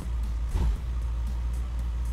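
Porsche 911 (996) M96 flat-six engine running, heard from inside the cabin as a steady low rumble.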